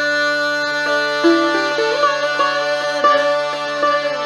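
Instrumental passage of Hindustani classical music: a harmonium plays held notes and a quick melodic run over a steady low drone, with a sarangi accompanying. There is no singing.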